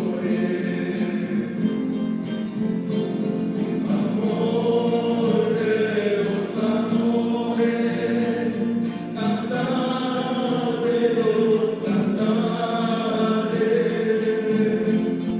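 A choir singing a hymn together, with held notes that rise and fall in phrases.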